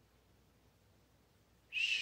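Near silence, then near the end a short, breathy, high-pitched whistle from a woman's mouth, about half a second long, a single tone falling slightly.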